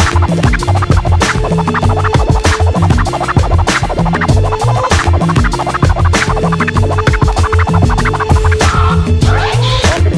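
Hip hop instrumental beat: steady drums over heavy bass with a held synth-like note, and turntable scratches cutting in, clearest near the end.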